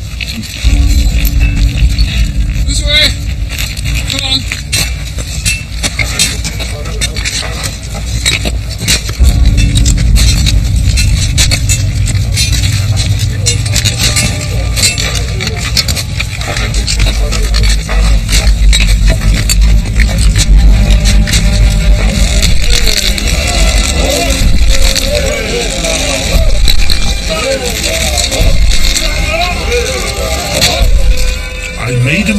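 Dramatic film-score music under repeated sharp blows of iron picks on rock. Men's voices call out, mostly toward the end.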